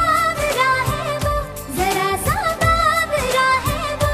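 Bollywood film song: a singing voice carries a sliding, ornamented melody over a steady beat and instrumental backing.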